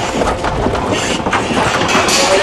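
Sheep hooves clattering and scrambling on the metal floor of a livestock trailer: a loud, dense run of knocks and bangs on steel.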